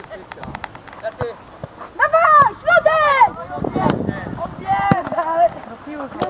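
Shouted calls across a football pitch, loudest from about two to three and a half seconds in and again near five seconds, with a few short sharp knocks between them.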